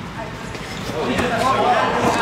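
A basketball bouncing on a gym floor in repeated knocks, with indistinct players' voices coming in about a second in and the sound growing louder.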